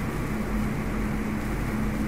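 Steady background hum and hiss of a recording with no speech: a low hum with a faint steady tone over it, unchanging throughout.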